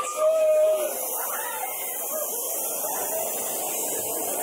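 Haunted maze soundscape: a single held, voice-like tone lasting about half a second shortly after the start, then a steady hiss with muffled voices beneath it.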